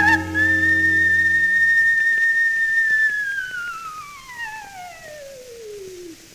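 Coloratura soprano voice on an old recording holding a very high, steady note for about three seconds, then sliding down in one long descending glissando that fades away near the end. Sustained accompaniment underneath stops about two seconds in.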